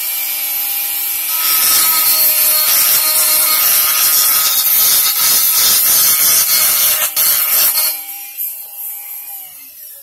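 Handheld rotary tool with a grinding stone running, then grinding against the edge of an acrylic piece for about six seconds as its corners are rounded off. Near the end the tool is switched off and its whine falls in pitch as it spins down.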